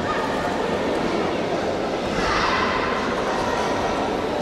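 Gymnasium hubbub of crowd chatter, with one short shout from several children a little over two seconds in: a kihap (kiai) yelled by the team during a taekwondo poomsae.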